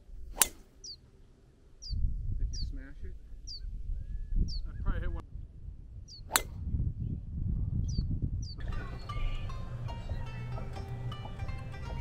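Two tee shots: a golf driver's clubhead cracking against the ball, once just after the start and again about six seconds later. Between them a bird repeats short, high, falling chirps, and wind rumbles on the microphone. Background music comes in about two-thirds of the way through.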